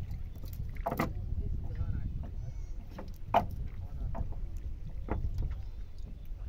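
A cast net being handled in a wooden boat: scattered clicks and knocks as the net and its weights shift against the wood. A steady low rumble of wind on the microphone runs underneath.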